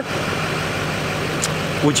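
A truck engine idling steadily.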